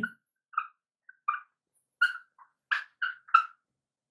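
Dry-erase marker squeaking on a whiteboard while words are written: a string of about ten short, irregularly spaced squeaks.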